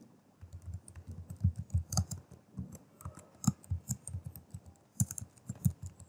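Typing on a computer keyboard: a run of quick, irregular key clicks with a short pause midway.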